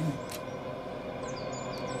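Quiet outdoor ambience with a few faint, high bird chirps in the second half.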